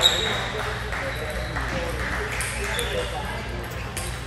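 A table tennis ball struck once with a sharp, ringing ping right at the start, followed later by a few fainter ball clicks, over a steady hum in a large hall.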